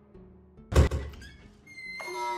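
A door thumps once, loud and sudden, about three-quarters of a second in, over soft background music; a high, slightly falling tone starts near the end.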